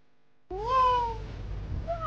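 Two meows, each rising then falling in pitch, starting about half a second in and again near the end, over a low steady hum after a moment of near silence.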